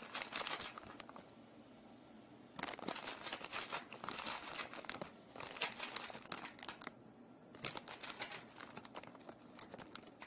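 Crinkling and rustling of packaging being handled, in three bouts of a few seconds each, with quieter gaps between them.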